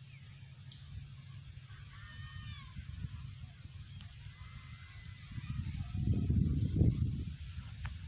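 Outdoor ambience: a low, gusting wind rumble on the microphone that swells about six seconds in, with faint bird calls about two seconds in.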